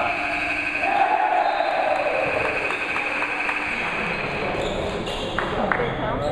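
A gym scoreboard buzzer sounds a long, steady, high tone for about four seconds as a last shot goes up, marking the end of the game. Players shout over it about a second in.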